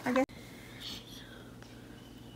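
A voice says a couple of words, then an edit cuts abruptly to quiet room tone with faint whispering and light rustling.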